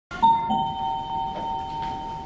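Two-note "ding-dong" doorbell chime, a higher note followed by a lower one, both left ringing and slowly fading together.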